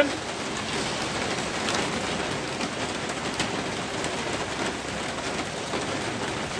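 Steady heavy rain falling on grass and ground, an even hiss throughout.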